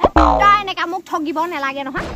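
A woman talking excitedly on a phone in Assamese. Near the start comes a short, falling, boing-like comic sound effect with a deep bass thud.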